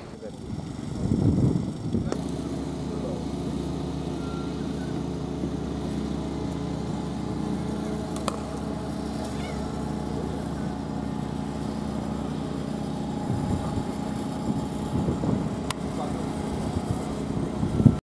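A steady low machine hum, like an engine running nearby, with faint voices in the background. Two sharp clicks come about 8 and 16 seconds in.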